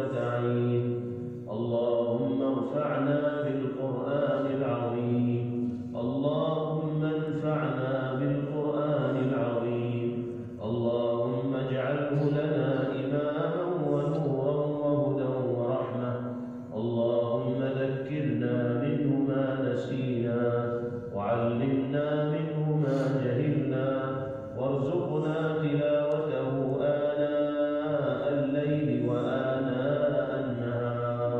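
A man chanting with no accompaniment, in long melodic phrases of several seconds each, with short breaks for breath between them.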